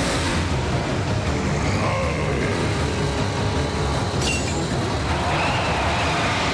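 Cartoon sound effects of robot vehicles driving at speed: a dense, steady engine-and-wheels noise, with a sharp crack about four seconds in.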